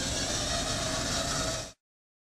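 Small wheeled telepresence robot's electric drive motors running steadily as it rolls along carpet, a faint whine over a steady hiss; the sound cuts off suddenly near the end.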